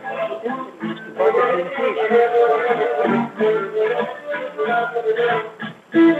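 Cretan lyra and laouto playing kontylies: the bowed lyra carries the melody over the plucked laouto accompaniment. The sound comes through a video call, thin and cut off at the top.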